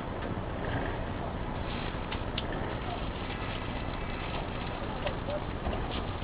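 Steady outdoor background noise with faint, indistinct voices in the distance.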